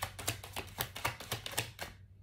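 A deck of tarot cards being shuffled by hand: a quick, uneven run of sharp clicks and snaps, about six or seven a second, stopping near the end.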